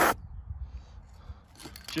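Aerosol can of black spray paint hissing: a short, louder burst right at the start, then faint hiss over a low rumble.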